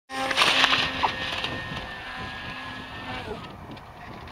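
Wind rushing and crackling over the microphone, loudest in the first second, with a thin steady whine from the radio-controlled eagle kite's motor that drops away about three seconds in.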